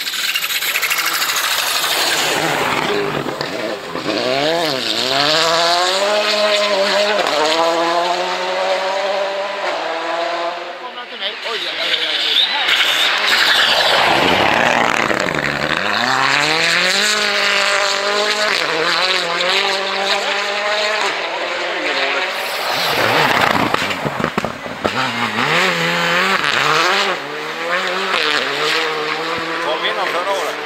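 Rally cars passing one after another, engines revving high and falling away as they lift and shift, in three loud passes.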